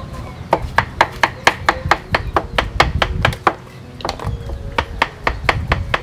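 Kitchen knife chopping vegetables on a wooden cutting board: quick, even strokes about four or five a second, a short pause a little past halfway, then more chopping.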